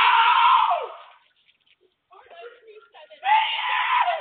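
A person screaming: a loud scream lasting about a second at the start, its pitch rising then falling, and another beginning about three seconds in, heard through a doorbell camera's microphone.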